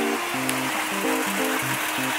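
Background music: a melody of short, evenly held notes stepping up and down, over a steady hiss.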